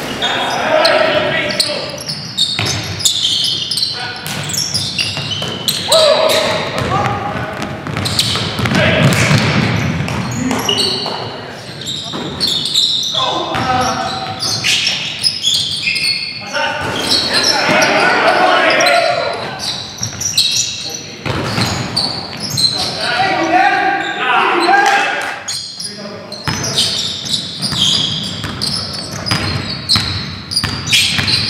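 Basketball game in a gymnasium: indistinct voices of players calling out, with the ball bouncing on the hardwood floor, all echoing in the large hall.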